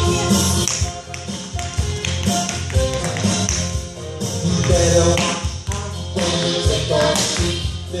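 A Halloween song plays while tap shoes tap on the studio floor.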